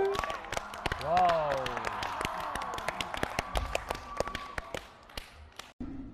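Audience clapping and cheering, with a voice calling out about a second in; the clapping thins out near the end.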